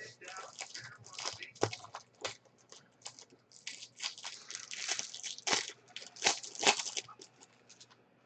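Baseball trading cards being handled and flipped through: a run of quick, crisp rustles and snaps of card stock, with a few louder ones in the middle and near the end.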